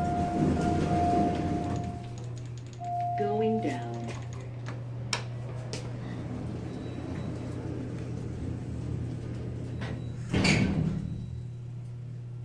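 Otis elevator sounding a steady electronic tone for about two seconds, then again for about a second, as its door is held open. A steady low hum from the elevator follows, with a brief, louder noise about ten seconds in.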